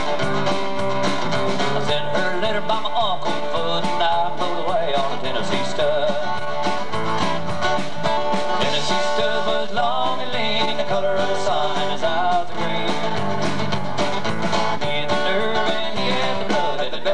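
Live country-rock band playing an instrumental passage between verses: strummed acoustic guitars, electric bass and a drum kit keeping a steady beat, with a lead line of bending notes over the top.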